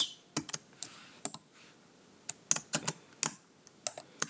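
Computer keyboard being typed on: irregular keystroke clicks in short runs with brief pauses between them.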